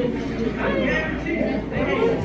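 Many voices chattering at once: indistinct, overlapping talk with no single voice standing out.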